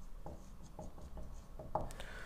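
Marker pen writing on a whiteboard: a run of short, faint strokes, with a slightly louder one near the end.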